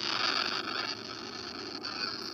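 A steady hissing, rustling noise through a video call's compressed audio, a little louder in the first second and easing after that.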